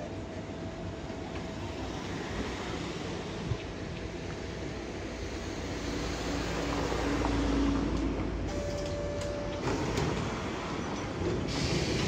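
Hankai Tramway streetcar pulling away from the stop and rolling past, getting louder about six to eight seconds in, with a few sharp clicks near the end.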